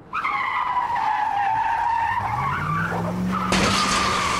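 Sound-effect car crash: a long tyre screech from the start, a low engine note rising underneath from about halfway, then a sudden loud crash about three and a half seconds in.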